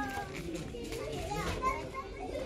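Children's voices and indistinct chatter, no clear words.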